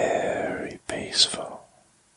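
A man whispering a short phrase of hypnosis talk, with a brief pause in the middle; it ends about one and a half seconds in.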